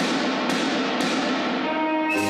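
Marching band drumline starting up, led by marching snare drums: a sudden start, then sharp accented strikes about every half second over fast rattling snare strokes.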